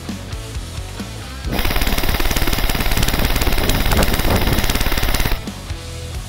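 Elite Force HK416 Competition airsoft electric rifle firing one long full-auto burst of about four seconds, a fast, even rattle of shots that starts about a second and a half in. Background music plays throughout.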